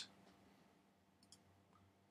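Near silence, with two faint computer mouse clicks in quick succession a little past the middle.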